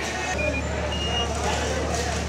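A steady low engine drone, with people talking in the background.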